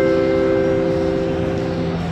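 Airport-style announcement chime: four rising notes, struck just before, ring on together and fade out, then stop just before a public-address call. A steady low hum runs underneath.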